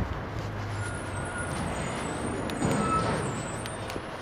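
Street traffic: a steady noise of passing vehicles, swelling briefly about two and a half seconds in as one goes by.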